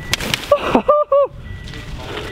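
Skis scraping and hissing over packed snow as a skier passes close by, followed by two or three short, high-pitched voice calls about a second in.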